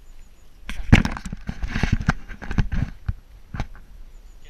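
Handling noise on a hand-held camera: a quick run of knocks and rubbing that starts just under a second in and lasts about three seconds.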